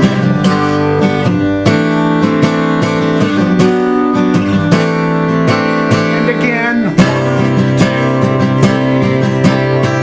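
Acoustic guitar capoed at the third fret, strummed in a steady rhythm, with a sliding chord change about seven seconds in.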